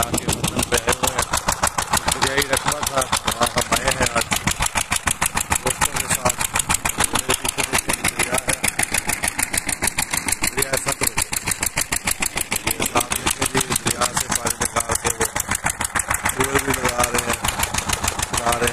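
A stationary engine driving a water pump, running at a steady speed with an even, rapid thumping of about ten beats a second. A man talks over it at the start and again near the end.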